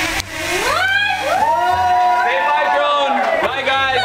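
Small quadcopter drone's motors revving up as it climbs away once its string is cut: a whine that rises over the first second, holds steady, and falls away near the end, with excited voices underneath.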